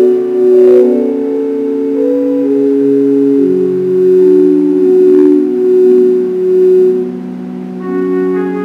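Organ playing slow, sustained chords, each note held for a second or more with no attack or decay, a low bass note entering a little before halfway.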